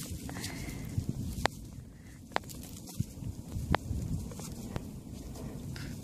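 Gloved hands crumbling and sifting dry soil among straw stubble: a low rustling and crunching, with a few sharp clicks spread through it.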